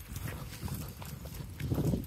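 A dog walking on a leash along a concrete sidewalk: faint footfalls and breathing, a little louder near the end. The dog is tiring.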